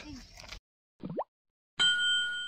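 End-card sound effects: a quick rising 'bloop' about a second in, then a bright chime with a few steady ringing tones starting near the end.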